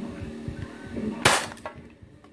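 Upgraded spring airsoft pistol fired once, a little over a second in: a single sharp crack as the BB strikes an empty drink can. The can is dented but not pierced.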